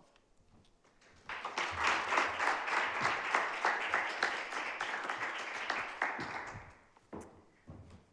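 Audience applauding. The applause starts about a second in and dies away after about five seconds, with a few separate knocks near the end.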